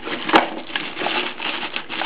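Thin plastic packaging bag rustling and crinkling as it is handled and lifted out of a cardboard box, with a sharp click about a third of a second in.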